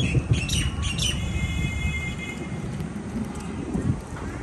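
Birds squawking and calling, with one held, ringing call about a second in, over a steady low rumble.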